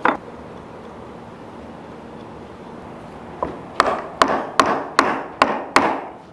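Wooden armrest of a child's rocking chair being knocked down into place on its glued spindles. There is one knock at the start, then, from about three and a half seconds in, a run of about seven sharp knocks, roughly two and a half a second.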